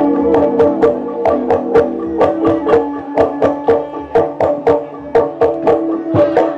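Sundanese traditional music played live: a steady rhythm of sharp, pitched struck or plucked notes, about three a second, over a held lower tone that fades early on.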